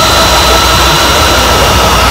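Harsh noise music: a loud, unbroken wall of hiss and low rumble with a few thin, steady high tones riding on top.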